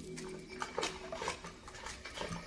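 Thin plastic bag crinkling and rustling in irregular bursts as hands dig into the slime inside it.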